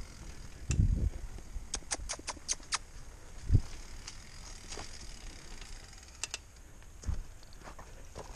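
Mountain bike rolling over a dirt road: a steady low rumble of tyres on dirt, with a quick run of sharp ticks and rattles about two seconds in and a couple of thuds from bumps.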